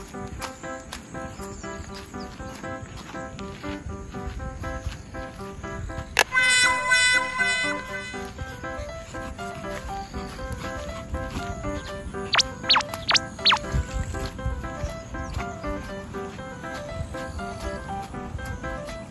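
Light background music with a repeating melody of short notes. About six seconds in, a brief ringing effect of several even tones sounds. Around twelve to thirteen seconds in come a few quick falling blips.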